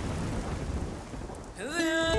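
A low rumbling noise with a hiss over it, fading away over about a second and a half. Near the end, music comes in with a note sliding upward and settling into held tones.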